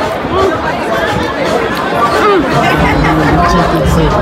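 Crowd chatter: many voices talking at once, with a steady low hum joining about three seconds in.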